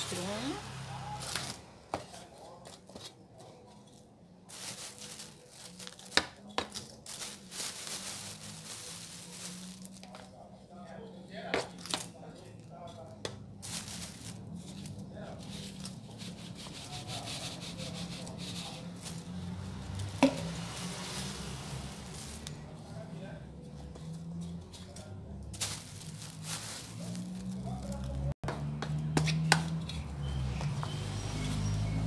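Potting soil being scooped from a plastic sack and poured into a plastic planter box: the sack crinkles, soil lands in loose spills, and a plastic scoop scrapes the soil, with a few sharp knocks against the planter.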